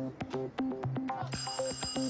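Background music of quick staccato notes, about four or five a second. About a second and a half in, a high electric doorbell begins ringing steadily over it as the bell button is pressed.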